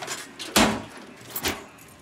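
Keys jangling at a small wall-mounted post box as letters are taken out and its door knocks shut. There is a loud sharp knock about half a second in and a smaller one about a second and a half in.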